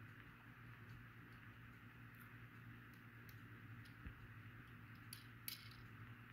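Near silence: room tone with a low steady hum and a few faint clicks around four to five seconds in.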